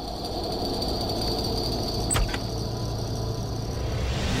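Low steady rumbling drone with a faint high whine, and one sharp click about two seconds in.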